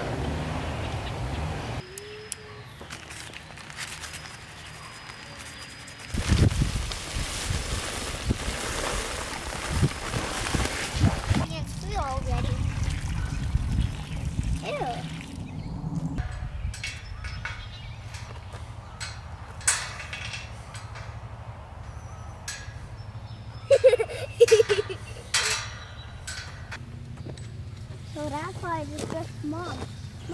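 Liquid poured from a bucket into a fence post hole around a wooden post, sloshing as it fills the hole, among scattered knocks and clicks of work.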